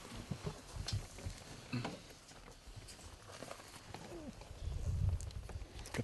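Scattered light knocks and rustling as someone climbs onto and handles things at the back of a hunting truck, with a low rumble about five seconds in.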